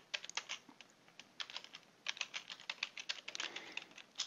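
Typing on a computer keyboard: runs of light, quick key clicks with a short pause about a second in.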